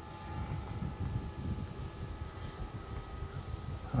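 Gusty wind buffeting the microphone: a low rumble that rises and falls unevenly, with a faint steady high hum underneath.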